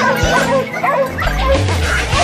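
A pack of Maremmano hounds yelping and barking at a wild boar they have caught, many short, high calls overlapping, mixed over rock music whose heavy bass comes in about a second in.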